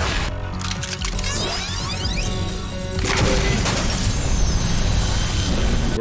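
TV-show soundtrack: dramatic score with sci-fi sound effects, then about three seconds in a loud crash and shattering as a bullet breaks through an energy shield.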